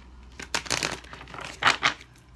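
A deck of tarot cards being shuffled by hand: two bursts of the cards rustling and slapping against each other, the second, near the end, the louder.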